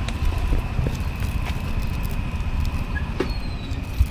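Low, steady outdoor rumble with a thin, steady high whine over it and a few faint clicks.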